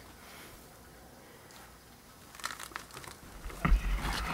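A heavy plastic wheeled trash can full of soil being manoeuvred. It is quiet at first, then there is rustling and scraping from about halfway, and a few low thuds near the end as the can is shifted.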